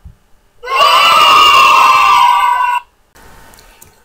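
Fox scream: one harsh, drawn-out call lasting about two seconds.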